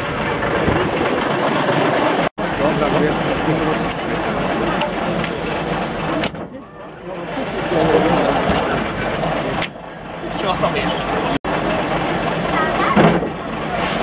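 Vintage Jelcz 'ogórek' bus's diesel engine running as the bus pulls up and stands, under the chatter of people close by.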